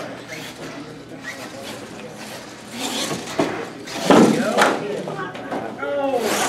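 Indistinct voices over a steady hiss, with a sharp knock a little after four and a half seconds in.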